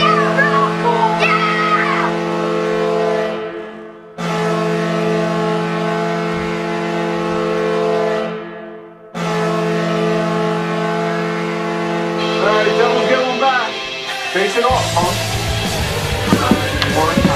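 A recorded hockey arena goal horn sounds for a scored goal, in three long, steady blasts that each fade out before the next starts. Voices and music come in over the last blast near the end.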